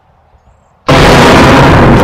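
Faint hiss, then about a second in a sudden, extremely loud, clipped and distorted blast of sound that carries on without letting up.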